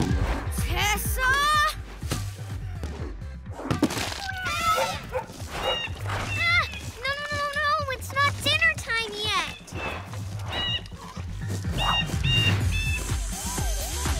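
Cartoon soundtrack: music with a steady bass beat under a busy string of short wordless voice sounds and animal-like calls that swoop up and down in pitch.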